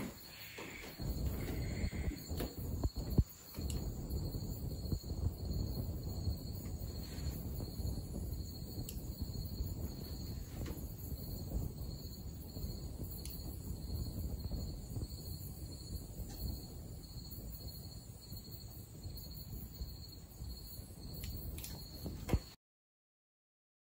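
Insects chirring steadily, a high pulsing note, over a low rumble. A few sharp knocks come in the first few seconds and again near the end.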